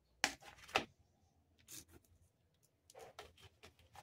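Two short sharp clicks about half a second apart near the start, then near silence with a few faint light taps: a plastic bucket lid being handled with a metal screwdriver at its screw hole.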